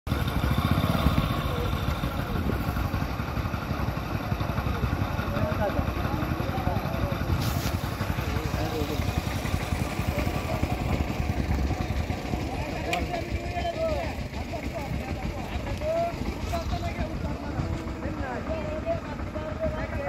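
A steady low rumble with people's voices talking throughout.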